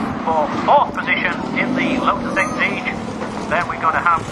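A man's voice commentating, with rallycross car engines running steadily underneath.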